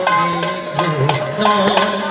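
Double-headed barrel drums (mridanga) played by hand in a sankirtan ensemble, irregular sharp strokes over a held melodic line that steps from note to note.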